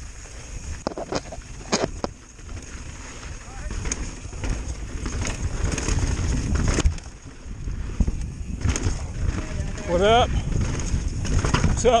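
Full-suspension mountain bike rolling fast down a rocky trail: a steady rumble from tyres and wind buffeting the microphone, with scattered clicks and knocks as the bike rattles over rocks. The rumble eases briefly past the middle, then builds again.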